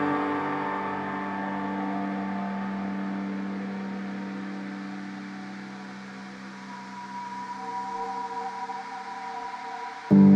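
Ambient space music of sustained drone tones that slowly fade, then new higher tones swell in about two-thirds of the way through.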